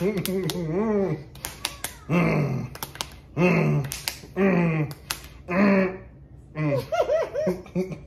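Two people's stifled, closed-mouth laughter and humming, coming in about six short bursts. Sharp claps sound between the bursts as fists strike open palms.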